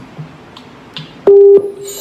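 Electronic keyboard being set up to play: a few soft clicks, then a loud, short, steady single note about a second and a half in, and music starting to come in at the very end.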